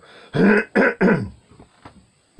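A man clearing his throat in three short, rough bursts within the first second and a half.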